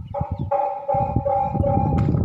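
A steady held tone, siren-like, over low rumbling and clattering noise.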